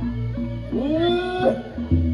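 Balinese gamelan ensemble playing steady sustained tones over a low repeating pulse. About two-thirds of a second in, a long cry rises in pitch and holds for nearly a second before breaking off.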